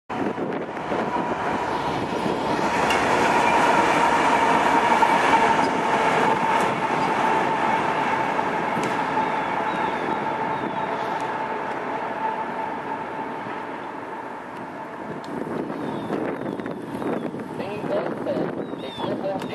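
Two CSX diesel locomotives running light past, engines and wheels on the rails, with a steady high whine through the sound. It is loudest about four to six seconds in and fades as they move away.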